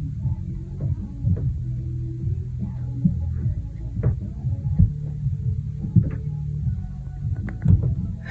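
Muffled noise from a neighbouring apartment, heard through the building: a steady low bass hum and throb with a string of irregular heavy thuds and knocks, the sort of banging the tenant blames on the neighbours' furniture.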